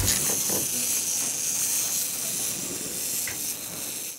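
A steady high hiss that slowly fades.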